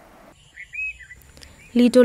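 A few short, faint bird chirps over quiet outdoor ambience, with a thin steady high-pitched tone underneath.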